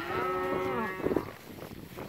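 A cow mooing: one drawn-out call of about a second that falls away at the end.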